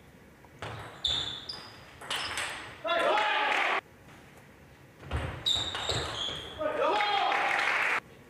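Table tennis ball clicking off rackets and the table in two short rallies, each ending in a burst of cheering and applause from the hall crowd. Each burst is cut off abruptly, the first about four seconds in and the second at the end.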